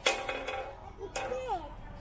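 Stacked metal balls of a ball-drop exhibit hitting the steel base with a clink that rings briefly, then a second knock about a second later.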